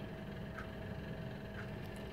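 Quiet room tone: a faint, steady mechanical hum under a low hiss, with no distinct events.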